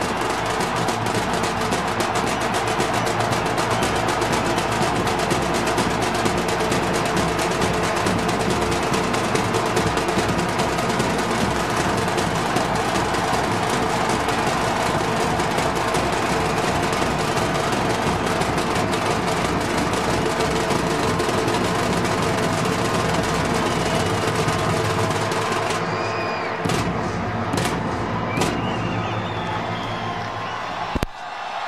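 Music over a stadium sound system, mixed with a large crowd cheering and clapping. Near the end the sound thins and a few high calls stand out.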